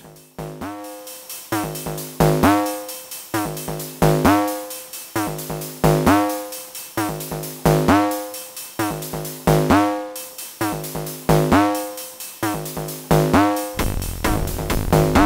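Roland TR-8S drum machine playing a looped pattern made entirely of its FM-synthesis percussion sounds: very sharp, digital, pitched hits with a ringing overtone stack, repeating in a steady groove with an accented stroke about every two seconds.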